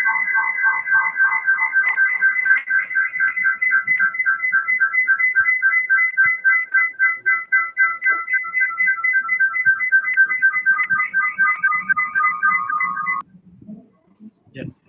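An electronic tune of a few high notes trilling rapidly, about five pulses a second, in the manner of a ringtone; it cuts off suddenly near the end.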